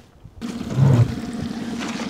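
Something spilling in a boat: a sudden rush of noise starts about half a second in and keeps going, over a low steady hum.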